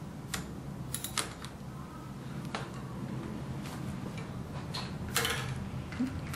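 13 mm ratchet wrench tightening the centre bolt of an electric wheelchair's hub motor: scattered, irregular clicks and small metal taps, the loudest near the end, over a steady low hum.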